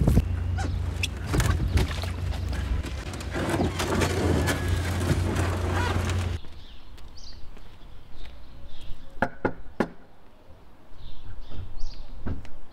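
Wind buffeting the microphone, with water and scattered knocks from a rowed dinghy. About halfway it cuts to quieter open air, with a few sharp knocks about three seconds later.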